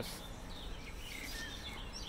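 Quiet outdoor background noise with a few faint, short bird chirps.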